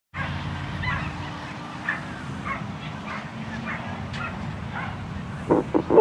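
Racing sighthounds yelping repeatedly, short high yelps about every half second, over a steady low hum.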